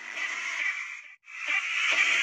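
Soundtrack of a beat-sync status video playing back from a phone editing app: a dense, hissy sound that cuts out suddenly just after a second in, then comes back louder.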